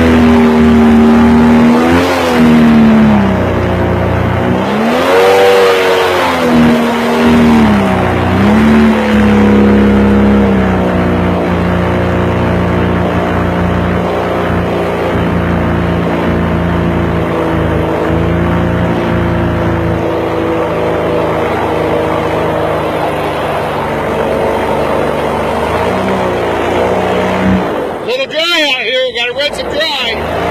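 Swamp buggy engine running under load as the buggy moves off, its pitch rising and falling a few times in the first several seconds, then holding steady for most of the ride. A short rough, broken-up noise comes near the end.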